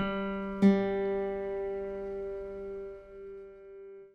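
The G below middle C sounded on the keyboard and on the guitar's open G string, both at the same pitch, the second attack about two-thirds of a second in and the louder one. The two notes ring together in unison and fade away over about three seconds, as the guitar string is matched to the piano key.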